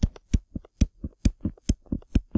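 Stylus tapping and clicking against a tablet screen while writing, about five sharp taps a second, one for each pen stroke of handwritten letters.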